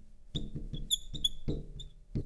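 Marker writing on a glass lightboard, giving a run of short, high squeaks as the pen strokes across the glass.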